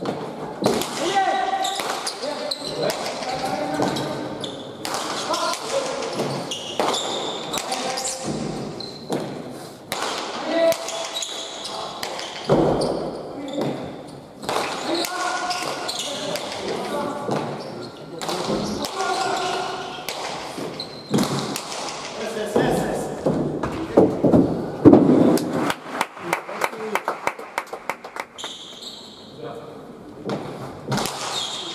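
Hard pelota ball smacking off the walls and floor of an indoor court and off players' bare hands, the impacts echoing in the hall, with a quick run of smacks near the end. Voices are heard through much of it.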